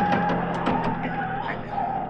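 Radio-drama sound effect of a car's tyres squealing through a curve: one long wavering squeal over a steady engine drone.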